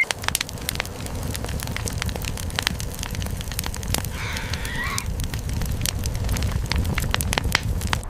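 Wood campfire burning, crackling and popping in many sharp irregular snaps over a low steady rumble of flame.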